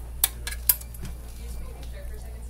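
Two sharp metallic clinks about half a second apart, with a softer one between, as a metal jewelry plug is handled and lifted out of the plastic basket in an anodizing bath. A steady low hum runs underneath.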